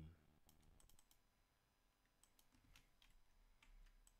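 Near silence with a few faint, scattered clicks from a computer mouse and keyboard.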